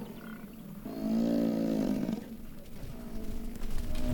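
American bison bull bellowing in the rut: one loud, long, low roar starting about a second in and lasting just over a second, with fainter bellowing after it. It is the challenge call of bulls contesting the right to mate.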